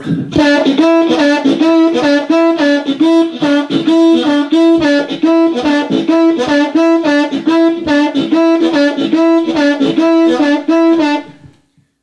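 Diatonic blues harmonica playing a rhythmic, drum-like riff: the two-hole draw note bent down and released again and again in a steady repeating pattern, stopping shortly before the end.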